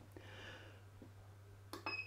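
Near the end, a click and a short electronic beep as the mug heat press's digital controller is switched on. A faint low hum runs underneath.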